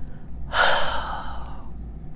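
A woman's loud, breathy gasp, acted out as a shocked reaction: a sudden unvoiced rush of breath about half a second in that trails off over about a second.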